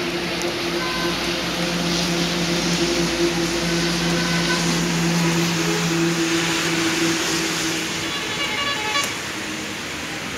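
Heavy rain pouring down in a steady hiss. Through most of it runs a steady low mechanical hum that fades out about eight seconds in, and a few short high beeps sound near the end.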